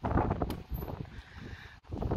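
Wind buffeting a phone microphone as a low rumble, strongest at first and dying down, with a single sharp click about half a second in.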